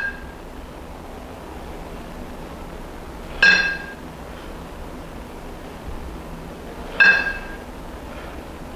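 Two kettlebells clinking together, a short ringing metallic clink about every three and a half seconds: once at the start, once about three and a half seconds in, and once about seven seconds in.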